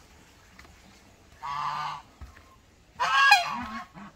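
Domestic waterfowl calling: a short call about a second and a half in, then a louder, longer call with a bending pitch about three seconds in.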